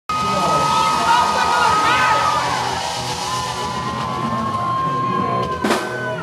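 Live band music with held tones and voices over it, and a sharp crash near the end.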